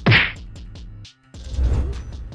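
Video transition sound effects: a sharp whip-like swoosh hit at the start that falls in pitch and dies away within about a second, then after a brief gap a low whoosh that swells up toward the end.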